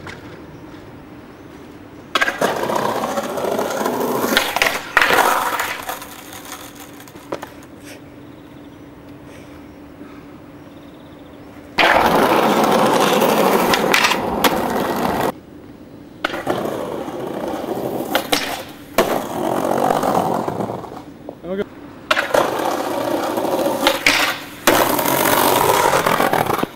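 Skateboard wheels rolling over paving, with the sharp knocks of the board popping and landing, in several separate takes that cut in and out abruptly, with a quieter stretch between about 6 and 12 seconds in.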